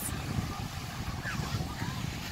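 Wind buffeting the microphone in an uneven low rumble on a choppy lakeshore, with faint distant voices.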